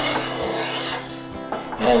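A spokeshave's blade shaving wood from an axe handle, a scraping stroke about a second long.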